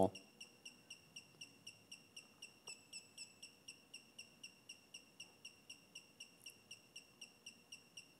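Brushless motors of an Alexmos SimpleBGC 3-axis gimbal chirping faintly during yaw auto PID tuning: an even series of short high-pitched chirps, about four a second.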